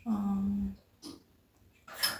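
A person's voice giving one short held sound at a single steady pitch for under a second, then a faint brief tap about a second in.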